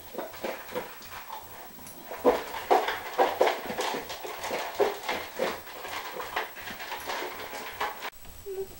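A puppy eating dry kibble from a bowl: a quick, irregular run of crunching and chewing, louder from about two seconds in.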